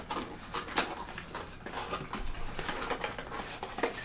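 Hands opening a cardboard CPU retail box and handling the packaging inside: scattered light clicks, taps and rustles of cardboard and plastic, with a sharper click near the end.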